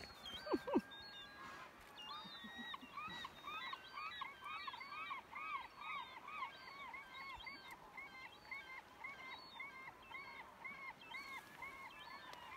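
A bird calling over and over, a steady series of short arched calls at about two or three a second, over quiet outdoor background. In the first second there are two brief louder sounds close to the microphone.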